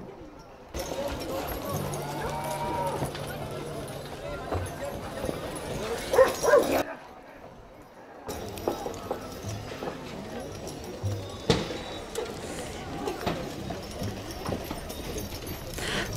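Rodeo arena sound of horses working a steer on the dirt, with distant voices from the crowd and a couple of brief dips in level.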